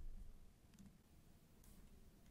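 Near silence: quiet room tone with a few faint computer keyboard clicks.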